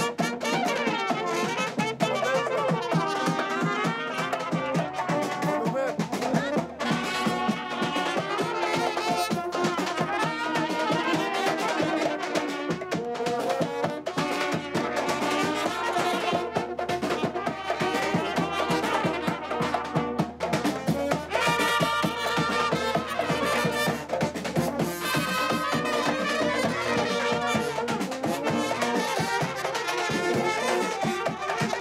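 Serbian brass band (trubači) playing a kolo dance tune: trumpets and tenor horns carrying the melody over a bass drum beat.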